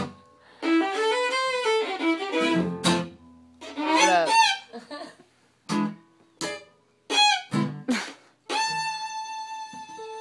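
Fiddle played in short bowed phrases, broken by voices and laughter, then settling into one long steady bowed note about eight and a half seconds in. An acoustic guitar is played along.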